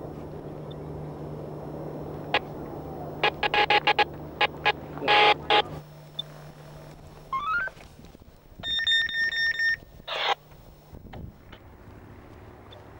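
Electronic beeping: a quick rising run of short tones, then a pulsing high beep lasting about a second, over a steady low hum. Bursts of quick clicks come earlier.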